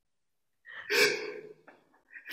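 A person's sobbing gasp, once, a little under a second in, followed by a faint click.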